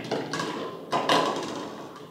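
A small plastic ball rolling along a wooden tabletop, then striking a set of hollow plastic toy bowling pins about a second in, knocking one over with a clatter.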